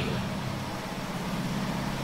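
A steady low hum, even in level throughout.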